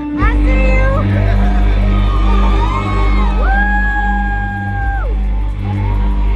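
Live band music kicking in: a loud, bass-heavy beat starts just after the opening, with a sliding lead tone above that glides up, holds and drops back down.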